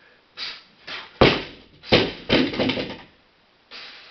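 A barbell loaded to 72.5 kg coming down onto the floor from the shoulders: a heavy thud about a second in, then more knocks and rattling from the plates as it settles over the next second or so.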